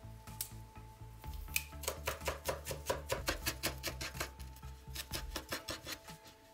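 Knife chopping fresh dill finely on a wooden cutting board: a quick, even run of sharp taps that starts a little over a second in and stops near the end. Quiet background music runs underneath.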